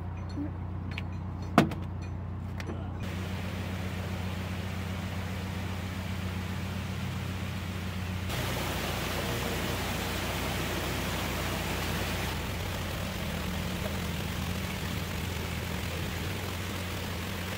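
Narrowboat's diesel engine running steadily at low revs, with one sharp knock about a second and a half in. A rushing noise builds over it, growing louder about eight seconds in.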